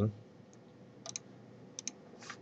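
Computer mouse button clicking twice in a quiet room, each a quick double click-clack, about a second in and again near the end.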